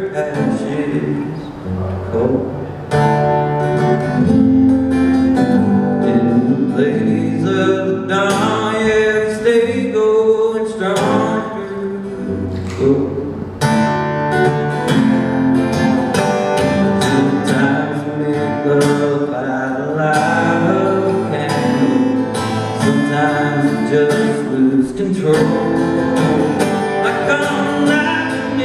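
Male singer performing live with a strummed acoustic guitar.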